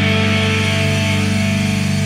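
Alternative rock band music: a single chord held steady and ringing, with no drum hits.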